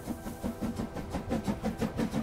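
Steam locomotive chugging sound effect, a quick even rhythm of puffs, about four or five a second, as the train pulls away and picks up speed, with soft background music underneath.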